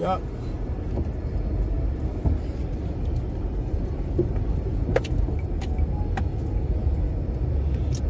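Car driving slowly over a rough unpaved gravel road, heard inside the cabin: a steady low tyre and road rumble, with a few light rattles and clicks about five to six seconds in.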